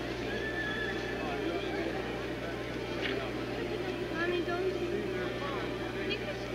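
Indistinct chatter of several people talking around the camera, no words clear, over a steady low electrical hum from the old video recording.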